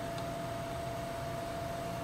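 Steady hum of a small refrigeration condensing unit left running, its compressor and condenser fan, with a faint steady tone over an even hiss.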